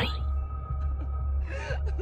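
Background music with a steady low drone, and a short breathy voice sound like a gasp near the end.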